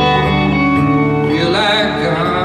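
Acoustic and electric guitars playing chords together, with a wavering higher melodic line coming in about a second and a half in.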